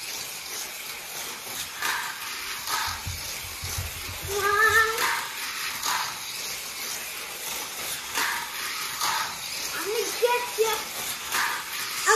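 Small remote-control toy cars running on a plastic track: a steady whirring hiss with scattered clicks and a run of low knocks about three to five seconds in. A child's brief vocal sound comes about four seconds in, and more child voices come near the end.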